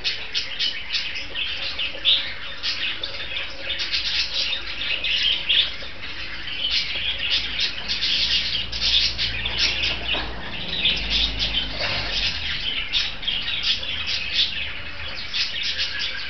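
A group of caged Indian ringneck parakeets chattering: a dense, continuous run of short, high chirps and calls.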